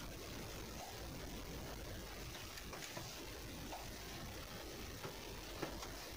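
Faint steady hiss of rain on the car, heard from inside the cabin, with a few soft ticks a couple of times.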